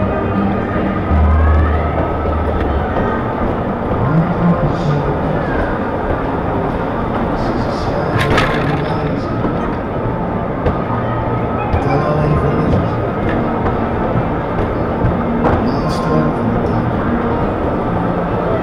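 Loud fairground music playing through a dodgem ride's sound system, heard from on board a moving bumper car, with voices mixed in. A sharp crack sounds about eight seconds in.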